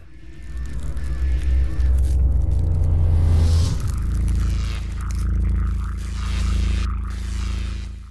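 Channel logo intro sting: a deep, building rumble that changes character about four seconds in, swells twice and then fades away near the end.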